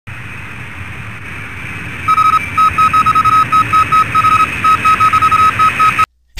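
Steady radio-style static hiss; about two seconds in, a string of short, high beeps starts up in an uneven on-off pattern like Morse code. It stops abruptly.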